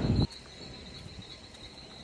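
Insects calling: a faint, steady, high-pitched drone on one unchanging note. A short burst of noise on the microphone comes at the very start.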